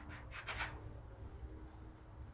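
Soft rubbing and scraping of biscuit dough being cut with a drinking glass and handled on a floured countertop: a few brief scrapes at the start, then only a faint low hum.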